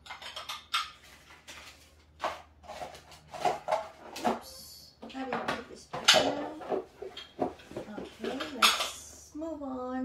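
Small Le Creuset stoneware heart-shaped plates clinking and knocking against each other as a stack of them is sorted and set down on a table, with repeated irregular clinks.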